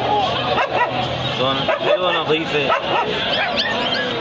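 A dog yipping and whimpering in a run of short, high cries, over people's voices.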